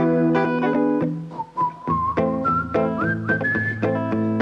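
Live rock band instrumental passage: electric guitar strumming chords, with a thin, whistle-like melody line entering about a second in and stepping upward in pitch.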